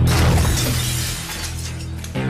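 A sudden crash-like sound effect that fades over about a second and a half, over steady low background music.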